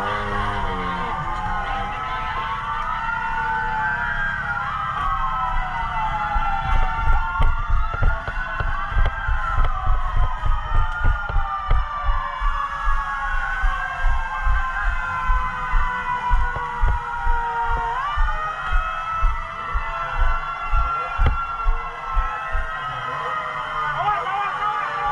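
Several emergency-vehicle sirens wailing at once, their pitches rising and falling on overlapping cycles of a few seconds over a steadier held tone. From about six seconds in, dull low thumps come about twice a second beneath them.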